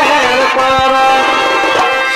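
Live Chhau dance music: a shehnai-type reed pipe plays a wavering melody over drum beats.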